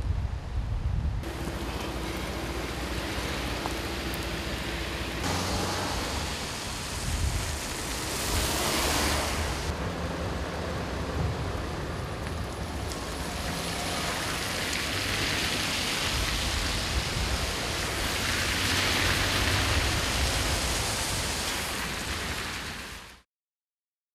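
Steady rushing noise of rain and traffic on wet roads, with a low hum of idling lorry and car engines under it. It changes abruptly several times and cuts off shortly before the end.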